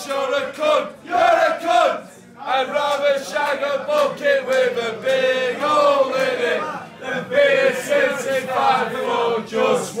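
Manchester United football supporters, a group of men's voices, loudly chanting a terrace song together in unison, with long held notes and brief breaks between lines.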